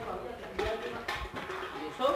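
Faint voices of people talking in the background, with a couple of short knocks about half a second and a second in.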